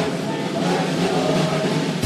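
Congregation singing a hymn-like peace song together with the band, many voices blended into one dense, sustained sound without a break.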